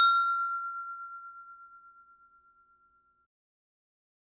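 A single bell-like ding sound effect, struck once at the start and ringing down over about three seconds into dead silence.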